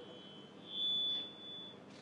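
A single high-pitched tone rings through the public-address system, faint at first, swelling up about half a second in and holding for about a second before fading: microphone feedback.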